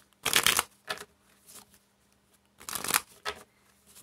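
A deck of Spanish playing cards being shuffled by hand in a few short bursts: the longest about half a second in, another near three seconds, with quiet gaps between.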